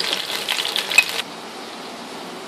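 Beef gola kababs sizzling in hot oil in a frying pan, with clicks of metal tongs as they are lifted out once fully fried; the sizzle cuts off suddenly a little over a second in, leaving quieter room tone.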